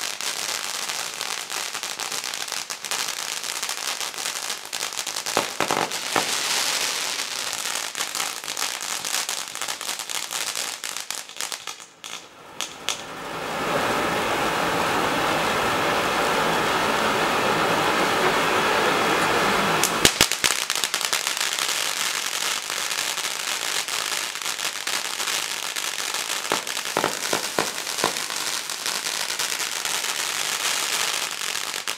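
Xplode Hot Spot firework battery with spark-fountain effects burning. It crackles densely for about twelve seconds, dips briefly, then gives a steady loud hiss. A few sharp cracks come about twenty seconds in, and the crackling resumes.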